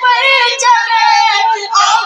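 A boy singing a manqabat (devotional praise song) into a handheld microphone, in a high voice with long held, wavering notes.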